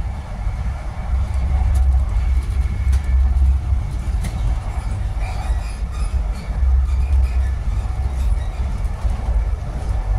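A Mark 3 coach of an HST train running at speed, heard from inside the passenger cabin: a steady, loud low rumble of wheels on rail, with a few faint clicks.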